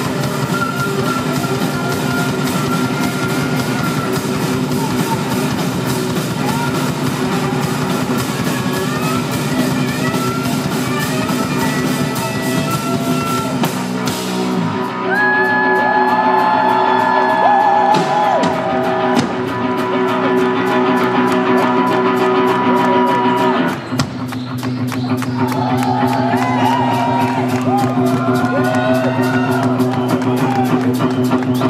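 Live rock band playing loudly on electric guitar, bass guitar and drum kit. About halfway the dense, hissy top end drops away, leaving long bending guitar notes over a steady low drone. About six seconds before the end the full band comes back in.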